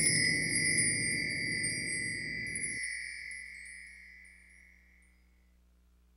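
A bright chime ringing and slowly fading away, a sound effect over an intro logo. Under it a low noisy drone cuts off suddenly about halfway through, and the chime dies to silence near the end.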